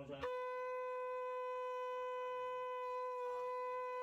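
A conch shell (shankha) blown in one long, steady note that sets in a moment after a brief pause.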